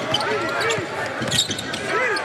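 Live basketball game sound: a ball being dribbled and sneakers squeaking on the hardwood court, with short sharp squeaks in the first half, over crowd noise in a large arena.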